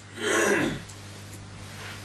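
A man clearing his throat once, briefly, about half a second long, near the start.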